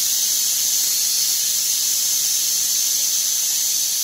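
Aluminium pressure cooker whistling: steam forcing out under the weight valve as a loud, steady, high hiss that stops abruptly at the end. It is one of the whistles counted to time the cooking of dal and rice.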